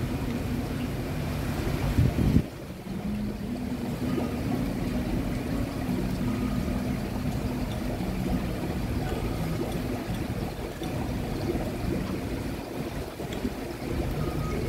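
Steady low rumble of background noise with a faint hum, louder for the first couple of seconds, then dropping suddenly to a lower steady level.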